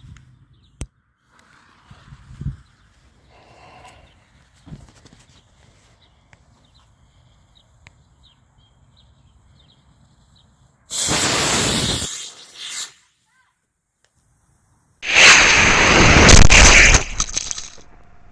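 C6-5 model rocket motor firing: after a quiet stretch with a few faint clicks, a loud rushing hiss lasting about a second and a half, then, about two seconds later, a second louder burst of the same rushing hiss lasting nearly three seconds.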